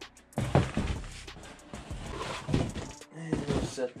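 A large cardboard shipping box being handled as a black molded side-by-side roof panel is pulled up out of it: cardboard scraping and rustling with several knocks and thuds from the panel against the box.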